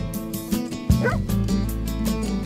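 An Irish Setter barks once, briefly, about a second in, over background music with a steady beat.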